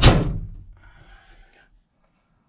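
Pickup tailgate shut with one heavy thunk that dies away quickly, closing on a newly fitted rubber weather-seal strip, followed by faint rustling.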